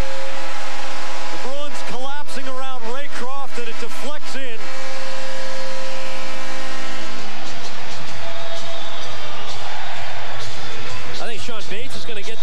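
Arena goal horn sounding a steady chord for about seven seconds with a voice calling out over it, then the home crowd cheering.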